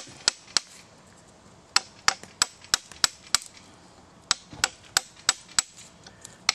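Sharp knocks of a hand tool struck into a log while carving wood by hand. They come about three a second in three runs, with short pauses between.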